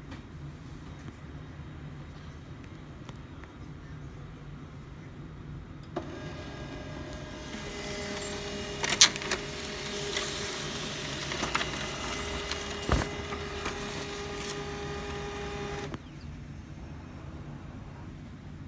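HP LaserJet M15w laser printer printing a test page: after a click about six seconds in, its motor runs with a steady whine and a few sharp clicks as the sheet feeds through, then stops abruptly about ten seconds later.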